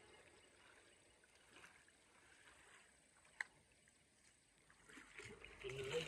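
Near silence, broken by one short, sharp click a little past the middle.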